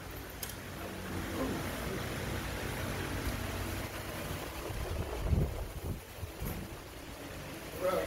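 Low, steady rumble of moving air on the microphone, with one heavy thump about five seconds in.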